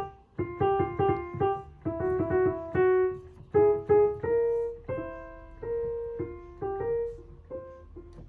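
Yamaha CLP-745 digital piano played by hand: a simple melody of single notes in the middle register, each one struck and left to fade. The notes come more slowly in the second half.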